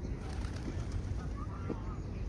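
A few short bird calls over a steady low rumble.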